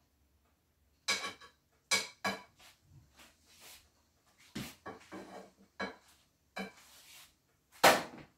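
A metal spatula clinking and scraping against a wok-style pan as a beef and vegetable stir fry is stirred and scooped. There are about seven sharp clinks, roughly a second apart, with soft scraping in between.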